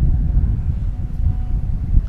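Low, uneven rumble of outdoor background noise.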